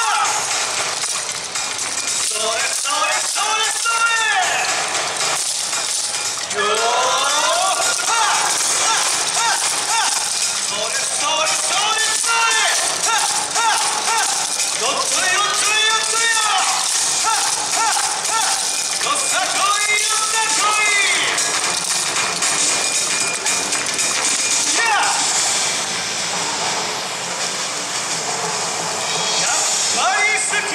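Yosakoi dance music played loud over speakers, a sung melody in short phrases over a busy backing. The clack of the dancers' naruko wooden clappers rattles along with it.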